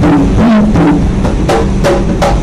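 A pair of conga drums played with bare hands: a quick run of strikes, several a second, with open tones that ring at a low pitch between them.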